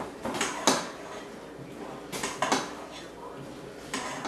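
Metal spoon scraping and clinking against a stainless steel mixing bowl while potato salad is stirred, a handful of strokes in two clusters: near the start and a little past halfway.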